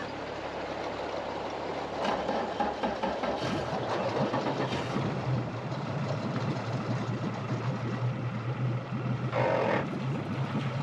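Yamaha outboard motor of an Atlantic 75 RIB running at low speed. Its steady hum grows louder about two seconds in, over a rush of water and wind noise, with a brief louder rush near the end.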